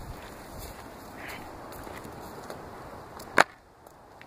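Faint rustling and handling noise, then a single sharp knock about three and a half seconds in as the canvas board is set down on concrete.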